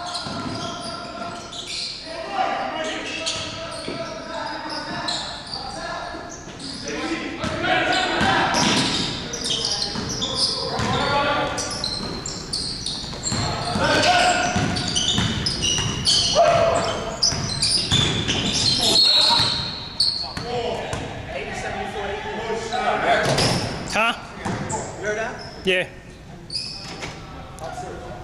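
A basketball being dribbled and bounced on a hardwood gym floor during play, with players and coaches calling out indistinctly throughout. Everything echoes in the large hall.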